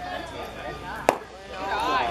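A pitched baseball smacking into the catcher's mitt with one sharp pop about a second in, over spectators' voices.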